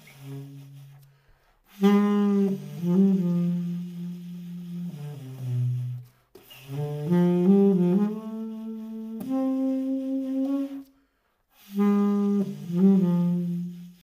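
Trevor James Signature Custom tenor saxophone played solo, unaccompanied: a soft low note at the start, then three loud melodic phrases broken by short pauses for breath.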